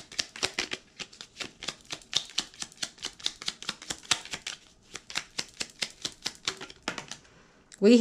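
A deck of oracle cards being shuffled by hand: a rapid, even run of crisp card flicks at about six a second, stopping about a second before the end.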